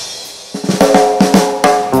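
The rock band drops out and its last sound fades for about half a second, then a drum kit plays a quick fill of hits that leads back into the full band near the end.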